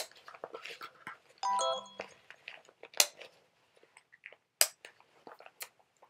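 Strap buckles of an airway-clearance vest being fastened: three sharp clicks, at the very start, about three seconds in and just before five seconds, with faint handling rustle between them. A brief pitched squeak or tone about a second and a half in.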